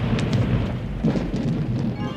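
Thunder rumbling over steady rain, swelling again about a second in.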